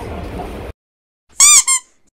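Subway car ride noise, a steady rumble that cuts off abruptly under a second in. After a moment of silence comes a short, high-pitched squeak sound effect, heard twice in quick succession, each rising and falling in pitch.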